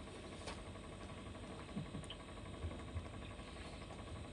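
A man gulping beer from a can, a few faint swallows, over a steady low hum.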